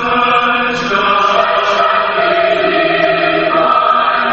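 Background music: a choir singing a slow song in long, held notes.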